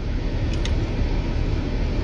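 Steady low rumble of vehicle noise, heard from inside a car.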